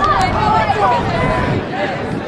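Several indistinct voices talking and calling out over one another, the chatter of a crowd at a football game, with one sharp click about a quarter second in.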